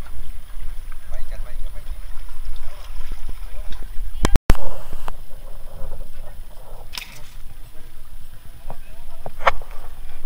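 Indistinct voices of people talking in the background over a steady low wind rumble on the microphone. There is a brief break in the sound about four seconds in, and a couple of sharp clicks later on.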